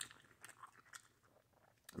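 Faint chewing of a sausage, egg and cheese wrap: a few soft mouth clicks, otherwise near silence.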